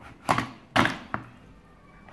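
Plastic lift of a Hot Wheels play set clacking as it lowers a toy car into a tank of water: two sharp clacks and a lighter click within the first second or so.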